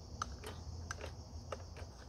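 A spoon scraping and tapping against a small metal tin as tuna is scooped out into a camp pot: about five light, irregular clicks. A steady thin high hiss runs underneath.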